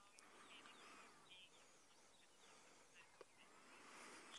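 Near silence, with a few faint bird calls.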